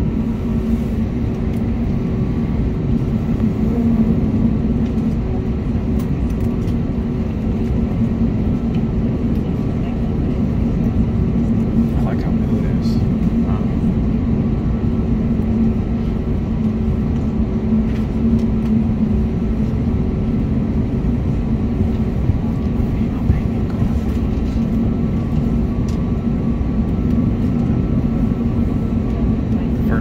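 Steady low rumble with a constant hum inside an airliner cabin while the plane taxis on the ground.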